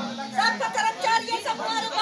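People talking, several voices in conversational chatter.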